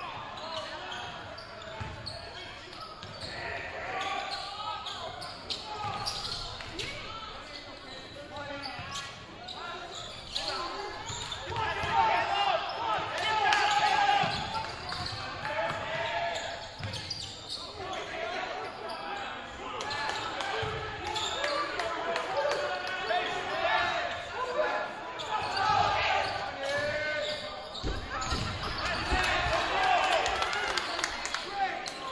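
A basketball being dribbled on a hardwood gym floor, with short sharp bounces, under shouting voices of players and spectators that echo around the gym. The voices are loudest around the middle.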